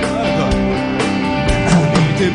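Rock band playing live: drum kit with cymbals and guitar carrying the song between sung lines, the singer coming back in near the end.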